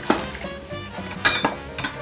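Ceramic dishes clinking as they are handled on a steel kitchen shelf: three sharp clinks, one at the start, one past the middle and one near the end, over tap water running into a wok.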